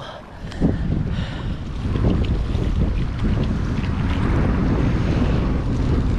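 Wind buffeting the microphone over small waves sloshing and splashing against a river wall, a steady rushing noise that grows a little louder about two seconds in.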